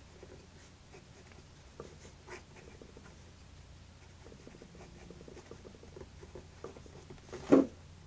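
Lamy 2000 fountain pen's gold nib scratching across paper as words are written, a faint, uneven scratching. A brief, louder sound comes near the end.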